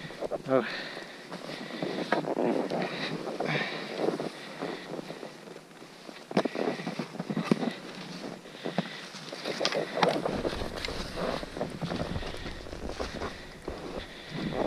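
A skier falling and floundering in deep powder snow: skis and body scraping and swishing through the snow in irregular bursts of rustling and crunching, with wind noise on the microphone.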